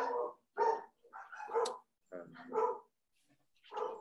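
Household dogs barking repeatedly in short bursts, then falling quiet near the end.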